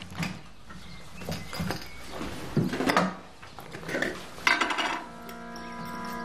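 Scattered clinks and knocks of kitchen crockery, glass and utensils being handled while tea is made. Background music with held notes comes in near the end.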